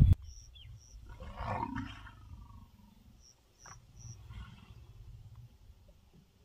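Male lion giving one short, low call about a second in, with faint high chirps around it.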